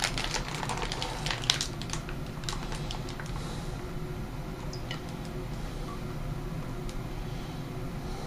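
A plastic wine-kit F-pack pouch being handled and tipped at the neck of a glass carboy: a quick run of small clicks and crackles over the first few seconds, then quieter with only a few scattered ticks as the pouch starts to pour.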